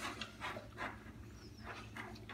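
A dog licking the inside of an empty plastic food bowl after finishing her meal: a quick, uneven run of short, soft wet licks, a few a second.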